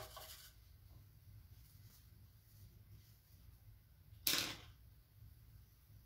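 A quiet room with two brief handling noises, short scuffs or rustles. The second, about four seconds in, is the louder and sharper of the two.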